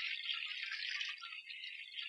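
Water pouring steadily, as when a bath is being filled, heard as an even splashing hiss.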